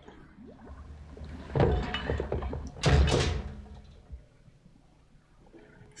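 Two heavy thuds about a second and a half apart over a low rumble, from a film soundtrack; the rumble fades out after about four seconds.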